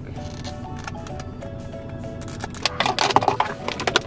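A cardboard retail box being handled and opened, with a burst of crackly rustling and clicks about three seconds in. Background music with a simple melody plays throughout.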